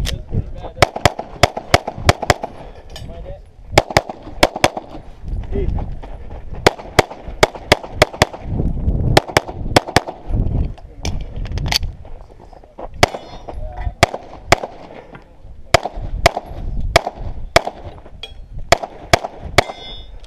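Semi-automatic pistol shots fired rapidly, mostly in quick pairs, with short pauses between strings.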